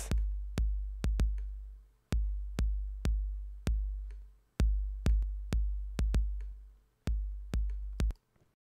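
A drum-machine kick drum from a hip-hop beat played on its own through parallel compression. Each hit is deep and booming, with a click at the front and a long low tail, in a syncopated pattern of about fifteen hits that stops just before the end.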